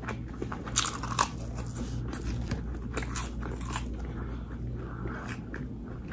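Close-up crunching bites and chewing of crispy fried food, with the sharpest crunches about a second in and smaller crunches scattered after, over a steady low hum.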